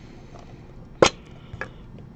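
A sharp plastic click about a second in, then a fainter click: a clear plastic card holder being handled.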